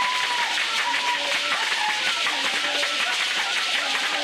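Live traditional folk music for a dance: a dense, steady shaking and clapping sound with short held notes scattered over it.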